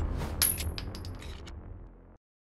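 Sound effects ending a music track: the low rumble of a heavy bass hit dying away, with a run of light metallic clicks and clinks that thin out and fade.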